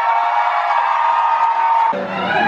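A female singer holding one long high note in a live concert, over crowd cheering; the note breaks off just before the end, as the band comes in.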